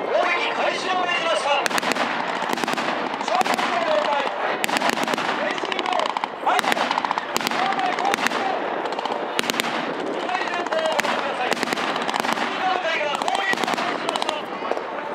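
Vehicle-mounted machine gun on a Type 96 wheeled armoured personnel carrier firing blanks in repeated short bursts of rapid shots.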